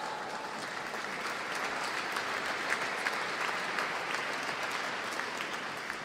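Audience applauding: a steady patter of many hands clapping, fading away just after the end.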